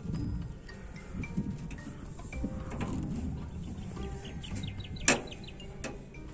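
Birds chirping in the background, with a single sharp knock about five seconds in.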